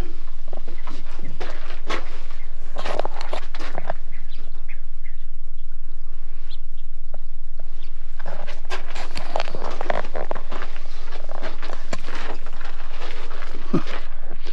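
Birds chirping and calling at a desert bird blind's feeder and water, mixed with scattered clicks and rustles, the calls busiest about two seconds in and again from about eight seconds. A steady low hum runs underneath.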